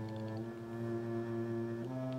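Cello playing long, sustained bowed low notes, changing pitch about half a second in and again near the end.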